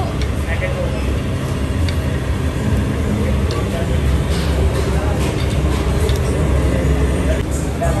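Busy restaurant buffet background: a steady low rumble of kitchen and room machinery under indistinct voices, with a few light clinks of metal serving tongs and china plates.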